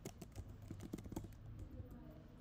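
Computer keyboard typing: a quick run of faint keystrokes.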